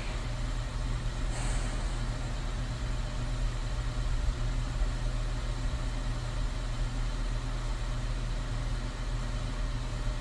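Steady low rumbling hum of an ambient background noise bed, with a brief soft hiss about a second and a half in.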